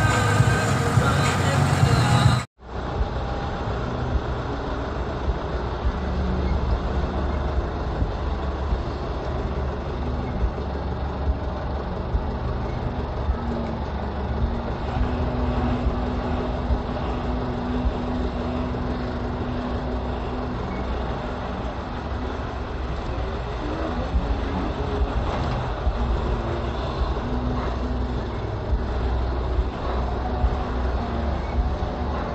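Steady low rumble of engine and tyre noise heard from inside a moving vehicle on the road. The sound breaks off abruptly a couple of seconds in and picks up again. A steady low drone stands out over the rumble for several seconds past the middle.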